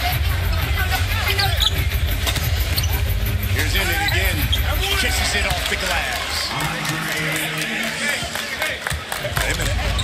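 A basketball being dribbled on a hardwood court, heard over arena crowd voices and music from the arena speakers.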